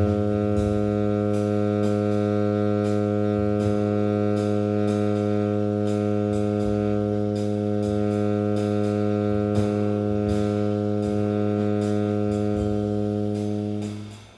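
Tenor saxophone holding a single low long tone, steady in pitch and volume, that stops just before the end. Drum-kit cymbal taps keep time underneath.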